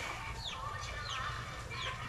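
Chicks peeping: short, high, falling cheeps about three a second, over a low steady hum.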